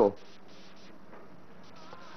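A pause in a man's speech, with the tail of a word at the very start and then only a faint, steady background hiss.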